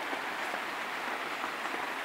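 Steady rain falling, heard from inside a shack.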